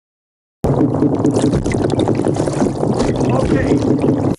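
Underwater recording of sound-producing sciaenid fish, croakers and drums, calling: a dense, continuous low drumming made of many rapid knocks and grunts. It starts abruptly about half a second in.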